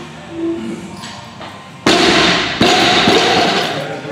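Barbell loaded with rubber bumper plates dropped from overhead onto the lifting platform: a heavy thud about two seconds in, then a second impact as it bounces, with the bar and plates rattling and ringing afterward.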